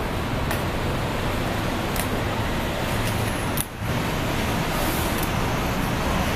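Steady city street traffic noise, with faint light clicks about every second and a half. The noise dips out briefly a little past the middle.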